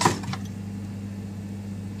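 A few light knocks near the start as bottles and a carton are moved about in a fridge, over a steady low electrical hum.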